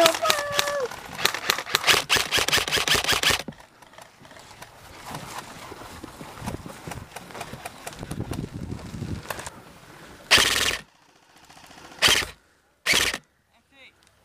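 Airsoft electric rifles firing full-auto, a rapid run of clicking shots lasting about two and a half seconds. Near the end come three short, loud bursts of noise.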